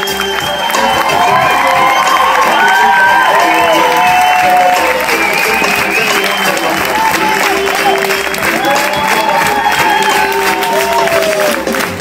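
Runway show music playing, with the audience applauding over it.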